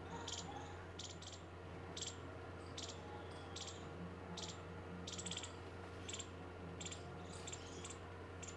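Field ambience: an insect, cricket-like, chirping in short, high, rapidly pulsed bursts, about one every 0.8 seconds, over a steady low hum.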